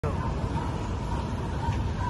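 Steady low rumble of outdoor background noise, with a faint steady high tone over it.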